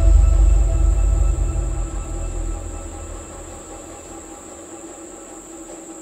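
Trailer score and sound design: a deep, rumbling low boom fading away over the first three seconds, over a sustained drone of steady held tones with a constant high whine on top.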